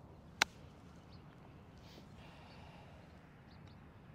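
A single crisp click of a golf club striking a Titleist ball on a chip shot, about half a second in.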